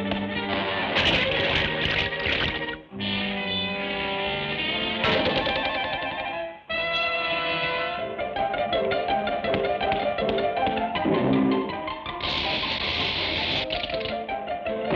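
Cartoon score music with quick, busy instrumental phrases that break off briefly twice. Near the end a burst of rushing noise comes in over it.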